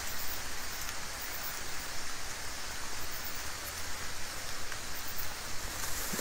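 Steady, even hiss of outdoor background noise with no distinct events in it.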